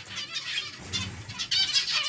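Zebra finches calling, a scatter of short high chirps from several birds overlapping.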